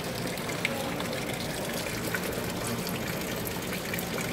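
Water pouring from a carved stone wall-fountain spout and splashing steadily into a stone basin.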